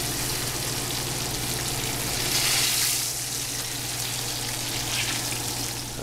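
Egg-washed, floured elk heart slices frying in hot grease in a skillet: a steady crackling sizzle that swells briefly about two and a half seconds in.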